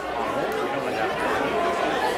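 Chatter of many voices talking at once.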